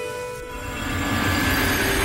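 Dramatic background-score transition effect: a held musical tone gives way to a rumbling swell that grows steadily louder, building toward the cut to the next scene.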